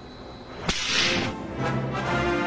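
A sudden whoosh sound effect about two-thirds of a second in, followed by orchestral music with brass that starts a moment later and carries on.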